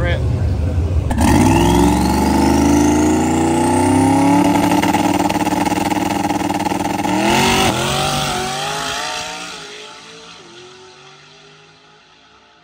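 Drag car's engine running at low revs, then revving up sharply about a second in and holding high revs with a slowly climbing pitch and a rising whistle through a burnout. A sharp change comes about seven and a half seconds in, then the sound fades away as the car goes off down the track.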